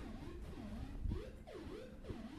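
Modular synthesizer voice playing a faint sequenced pattern from an Intellijel Metropolis, its notes gliding up and down in pitch, as the sequence is cut from eight stages to seven.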